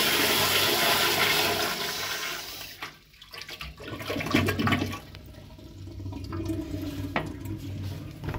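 Kohler Corwyn toilet flushing: a loud rush of water that falls away sharply about three seconds in, followed by quieter water sounds as the bowl settles.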